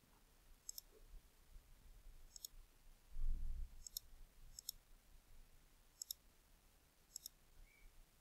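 Computer mouse button clicking: about six short, sharp clicks spaced a second or so apart. A dull low thump comes about three seconds in.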